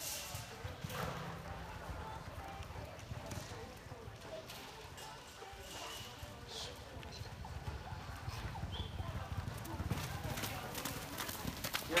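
Horse galloping on soft arena dirt, its hoofbeats coming as low thuds as it runs around barrels.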